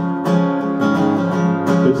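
Acoustic guitar strummed as the accompaniment to a country song, several strums ringing on between sung lines.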